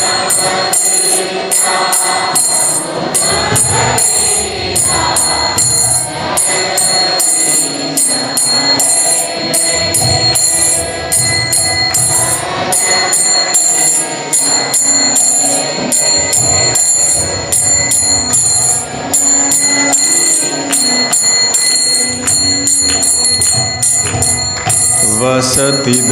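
Devotional kirtan music: small hand cymbals (kartals) struck in a fast, steady rhythm with a constant metallic ringing, under a wavering melody line.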